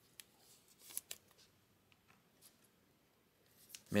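Faint rustling and a few light clicks of a trading card being slid into a clear plastic sleeve and rigid plastic holder, with a cluster of sharp ticks about a second in.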